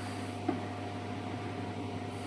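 Steady electrical hum from the idling Bode seam welder and its welding power source, with a single short click about half a second in.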